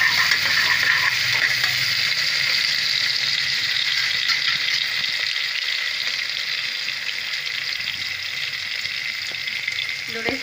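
Sliced onions with cashews and raisins sizzling in hot oil in a steel pot, a steady frying hiss that eases slightly toward the end. A single sharp click right at the start.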